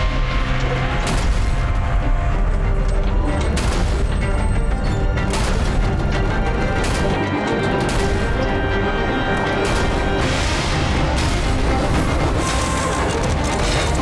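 Dramatic action music with repeated heavy booms and crashes at irregular intervals, battle sound effects for a giant mech attacking a city.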